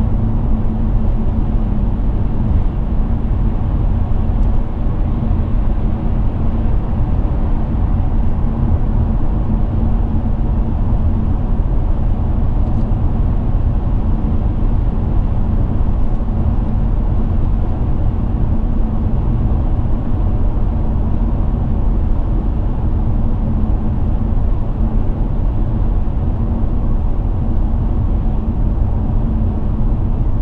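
Steady interior noise of a BMW 730d saloon cruising at speed: tyre and road noise with the 3.0-litre straight-six diesel running, and a steady low hum.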